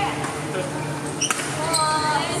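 Badminton racket striking the shuttlecock, one sharp hit a little past halfway, over background voices and the steady hum of the hall.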